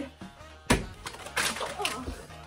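A deck of playing cards and a handful of small soft balls thrown up and coming down: a sharp thump about two-thirds of a second in, then two shorter scuffling bursts as things land and scatter.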